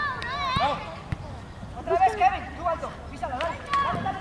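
High-pitched voices shouting in short, untranscribed bursts on a youth football pitch, three times over.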